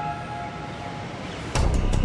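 Dramatic theme music: held tones fade, then a loud beat with deep bass and drum hits comes in about one and a half seconds in.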